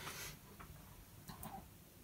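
A quiet room with a soft brief rustle at the start and a few faint small ticks about halfway through.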